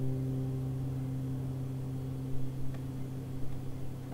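The final guitar chord of a song ringing out, a sustained low chord slowly fading, with a faint tick or two.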